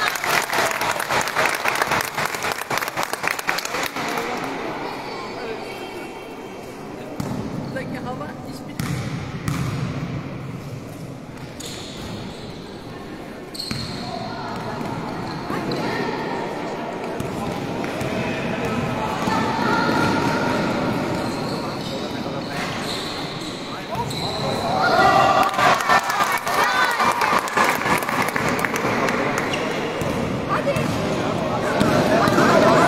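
A basketball bouncing on a sports-hall court during a game, with players' and spectators' voices calling out and echoing in the large hall.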